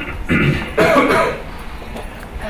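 Two short non-speech vocal bursts from a person, about half a second apart, the second the louder.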